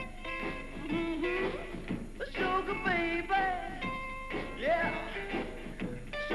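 Rockabilly song: a man singing over a rock-and-roll band with guitar.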